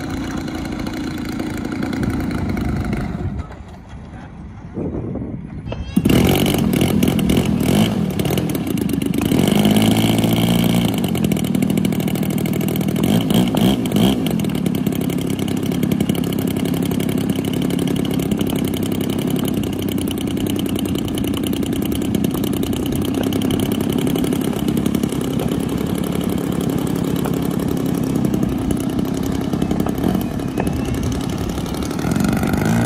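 Engine of a large-scale RC aerobatic airplane running on the runway. It drops away a few seconds in, then comes back louder with a second plane's engine. That engine steps up and down in pitch for a couple of seconds, then runs steadily at low throttle.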